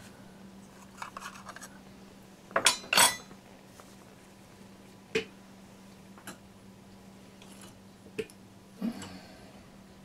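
Small metal spatula clinking and scraping against a small ceramic mixing dish while stirring water putty with water, with a louder double clink about two and a half seconds in and a few lighter single clinks after it.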